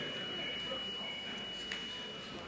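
A steady, high-pitched pure tone held at one pitch, over the even background noise of a large room with an audience.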